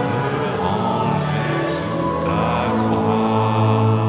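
Congregation singing a hymn together in a large, echoing stone church, on long held notes.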